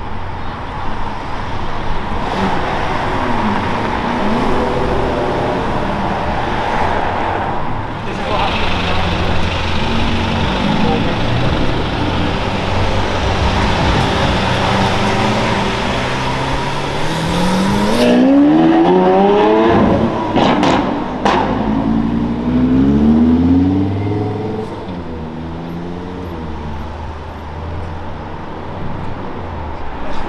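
Supercar engines running at low speed, then a Lamborghini Aventador's V12 accelerating hard past, rising in pitch twice as it pulls through the gears, with a couple of sharp cracks between the two pulls.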